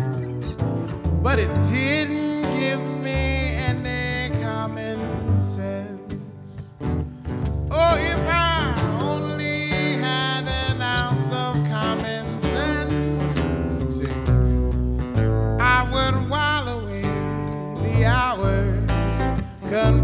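Live acoustic trio playing: a steel-string acoustic guitar, a grand piano and an upright bass, with a man singing a wavering melody over them.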